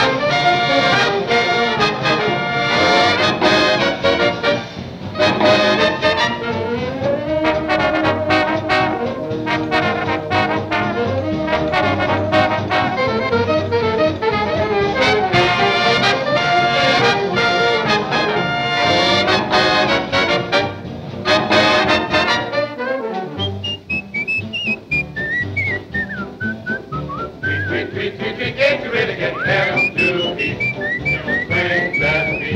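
Swing big-band instrumental with trumpets and trombones playing. About 23 seconds in, the band drops out and light whistling takes over, short rising and falling bird-like phrases.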